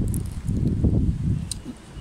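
Wind buffeting the microphone: an uneven low rumble that eases off toward the end, with a faint click about one and a half seconds in.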